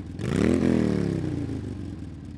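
An engine revs up sharply about half a second in, then its pitch slowly falls away as it winds down.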